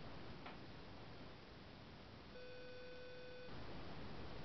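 A faint single steady beep lasting about a second, a little past the middle, with a faint click shortly after the start, over quiet room tone.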